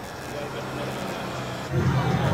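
A vehicle's engine running steadily with a low hum under a broad hiss. Loud guitar music comes in near the end.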